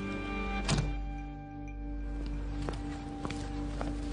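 Background music of sustained tones, with one heavy thunk about three-quarters of a second in: a car door shutting.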